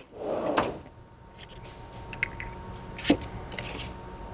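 Metal tool chest drawers: a drawer slides on its runners in the first second, then a sharp click about three seconds in as another drawer is pulled open.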